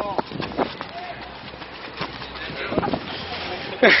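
Scattered, indistinct voices over steady outdoor background noise, with a laugh near the end.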